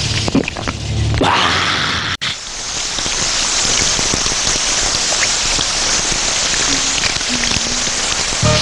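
Shower spray running in a steady hiss of water, starting abruptly about two seconds in after a short stretch of low music.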